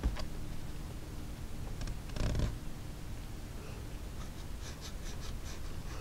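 Quiet handling noise: a bump at the start, a short rubbing scrape about two seconds in, and a few light ticks near the end.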